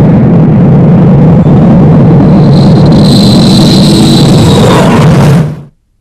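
Loud, steady rumbling sound effect. A high whistling tone joins it about two and a half seconds in and fades about two seconds later, and then all of it stops abruptly shortly before the end.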